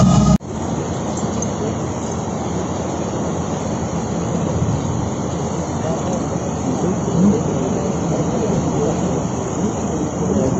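Brass band music cuts off abruptly just under half a second in, leaving a steady outdoor noise with faint, indistinct voices in it.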